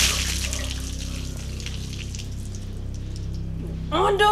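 Water thrown from a stainless-steel stock pot splashing over a person, loudest at first and fading within about a second into light dripping.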